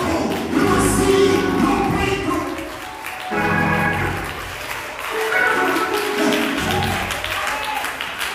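Gospel music: voices singing over instrumental accompaniment, with hand clapping along.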